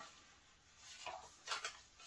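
Faint rustling and brushing of a paper record sleeve and card packaging being handled as a 7-inch single is drawn out, in a few soft, short strokes in the second half.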